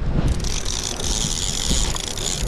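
Fishing reel's drag buzzing steadily as line pays out to a hooked kingfish, starting about a third of a second in, over wind rumbling on the microphone.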